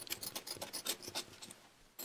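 Dull knife blade scraping rust off a rubber O-ring for a bogie wheel seal: a quick series of short, quiet scratches that dies away near the end.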